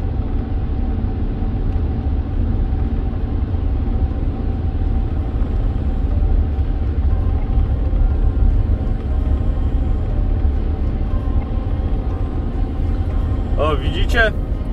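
BMW E60's M57D25 2.5-litre straight-six diesel and road noise, heard from inside the cabin while driving with the engine held steady at about 2,260 rpm: a steady low rumble. The DPF regeneration has just ended and exhaust temperatures are falling.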